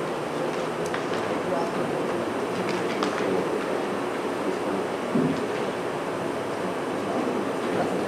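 Indistinct murmur of people talking in a large room over a steady background hum, with a few light clicks about one and three seconds in.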